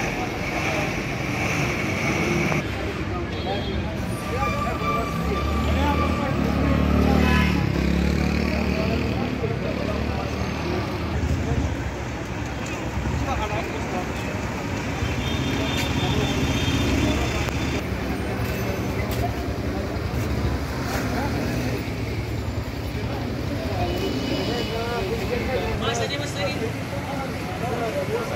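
Street traffic with vehicles driving past, one engine rumbling loudest about six to eight seconds in, over a background of people's voices.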